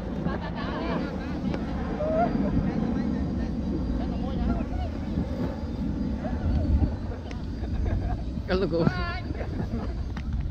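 Scattered calls and shouts of several young men outdoors, over a steady low rumble of wind on the microphone; one louder call comes about eight and a half seconds in.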